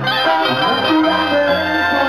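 Live band music played loud, an instrumental passage of held, layered notes with no singing.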